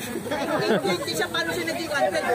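Overlapping chatter of a group of people, several voices talking at once.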